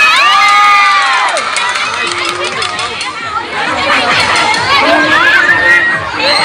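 Crowd of high-school students shouting and cheering, with high-pitched shrieks and whoops over the din. One long held shout rises above it in the first second or so, and another rising whoop comes near the end.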